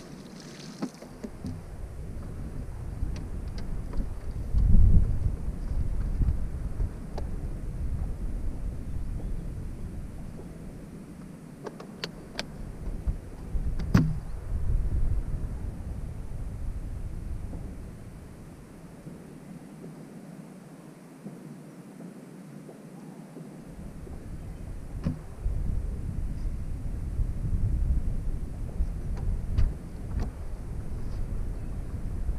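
Wind buffeting the camera microphone, a low gusty rumble that swells and fades. A short splash at the very start as a released bass hits the water, and a few sharp knocks around the middle as a deck storage compartment lid on the bass boat is handled.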